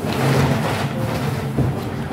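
Rustling and shuffling as a fabric laundry bag is handled and set aside, over a steady low hum.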